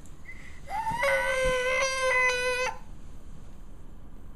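A drowsy toddler crying out once, about two seconds long: it rises at the start, then holds a steady pitch before stopping. It is a fussing cry at being roused from sleep.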